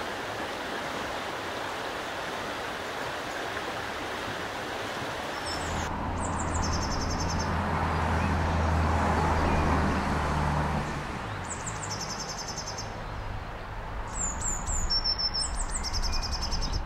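Small birds singing in woodland, in repeated high chirping phrases, over a steady outdoor rush of background noise. A low hum swells from about six seconds in and fades out by about eleven.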